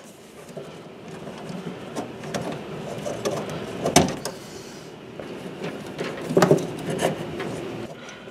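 Metal retaining clips and plastic fittings on a combi boiler's flow sensor being worked free by hand: scattered small clicks and rattles, with a sharp click about halfway through and a short run of knocks later on.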